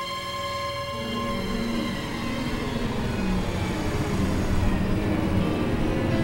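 Tense background music holding a chord, under a low engine rumble that grows steadily louder as motorcycles approach.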